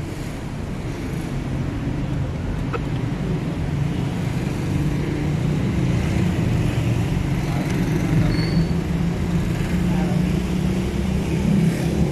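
Street traffic noise: a steady low engine rumble that slowly grows louder.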